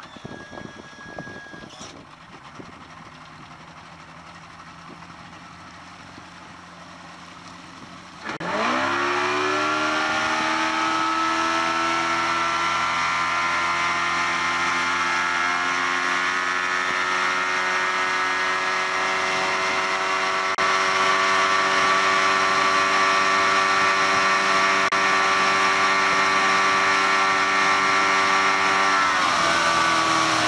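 Yamaha 130 hp two-stroke V4 outboard idling, then opened to full throttle about eight seconds in: the engine note climbs steeply as the boat comes onto the plane, then holds high and steady at top speed over rushing water and wind, stepping up in loudness about two-thirds through. Near the very end the throttle comes back and the pitch drops.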